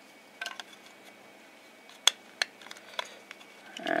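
A few light clicks and taps of a hard plastic Raspberry Pi case being handled in the fingers, the sharpest about halfway through.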